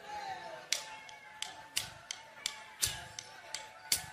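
Sharp wooden clicks in a steady beat, about three a second, counting the band in; they stop just before the music starts. A faint steady tone hangs underneath.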